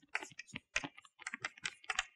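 Chalk writing on a blackboard: a quick, irregular run of short taps and scrapes as the letters are formed.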